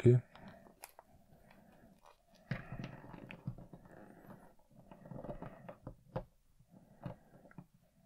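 Quiet handling noise from a hard-plastic action figure being posed by hand and stood on a wooden tabletop: soft rustles and a few faint clicks of plastic parts.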